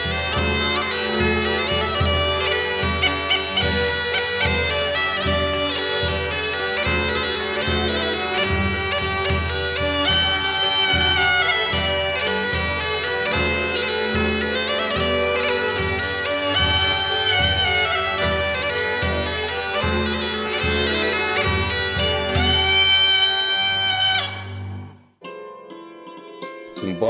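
Belarusian bagpipe (duda) playing a lively folk tune over its steady drone, with violin and a plucked double bass keeping a regular beat. The music stops about a second before the end.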